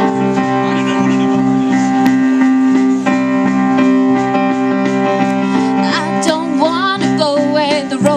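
Live rock band playing the instrumental opening of a song, with electric guitars and keyboard holding steady sustained chords. About six seconds in, a melody line with wide vibrato comes in over them.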